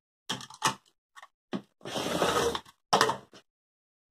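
Rotary cutter run along an acrylic ruler through pieced cotton fabric on a cutting mat, trimming the table runner's edge straight. The cut itself is a noisy stretch of about a second in the middle, with short clicks and knocks of the ruler and cutter being handled before and after it.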